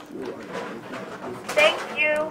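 Faint voices, then about one and a half seconds in a short, high-pitched vocal sound.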